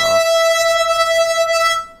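Digidesign TurboSynth's oscillator, made from a guitar sample, playing one steady pitched tone rich in overtones that cuts off just before two seconds in; it sounds pretty weird.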